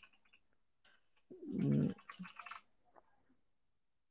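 Computer keyboard typing, a scatter of short key clicks, with a short low pitched sound that falls in pitch about a second and a half in.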